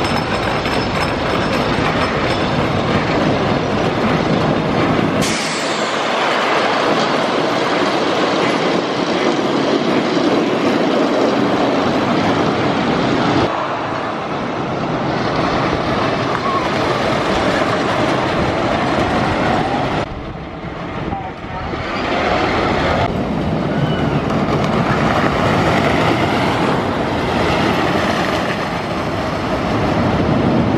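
Wooden roller coaster train running over its track, a loud continuous rumble of wheels on the wooden structure. Its level and tone change abruptly several times.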